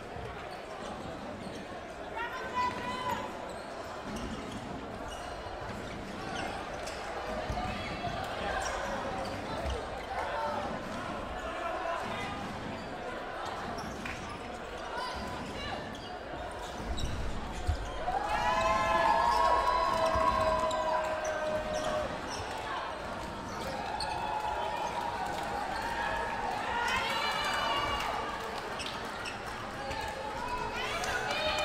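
Players' voices and shouts echoing in a large sports hall, with scattered thuds on the wooden floor. About two-thirds of the way in, a group of voices calls out together for a few seconds.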